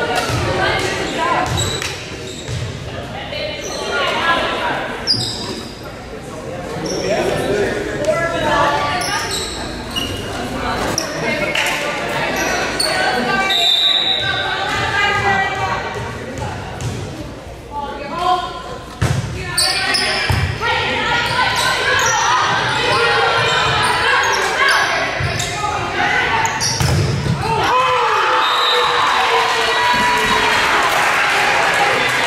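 Indoor volleyball play in an echoing gym: the ball thuds as it is hit and bounces on the hardwood floor, among players' and spectators' voices. The voices grow into louder shouting over the last few seconds as the players come together.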